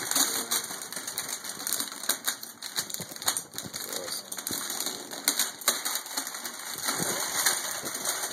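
Shiny metallic gift wrapping paper crinkling and tearing as it is pulled off a large cardboard box: a continuous run of sharp crackles and rips.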